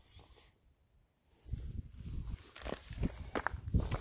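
Handling noise and footsteps as the phone is carried round the motorbike: near silence at first, then from about a second and a half in a run of faint, irregular soft knocks and rustles.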